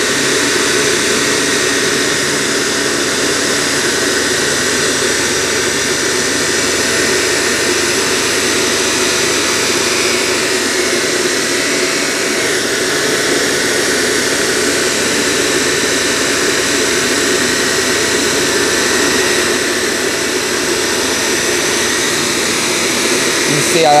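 Shark Apex Powered Lift-Away DuoClean with Zero-M upright vacuum running steadily as its floor nozzle is pushed over a low-pile rug, the motor and spinning brush rolls making an even, unbroken rush.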